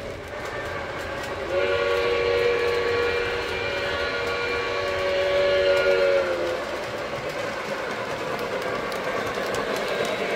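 A model New York Central steam locomotive, a Lionel Legacy engine, blowing its sound-system steam whistle. A single chord starts about a second and a half in and is held for about five seconds, over the steady running noise of the O-gauge train rolling on the track.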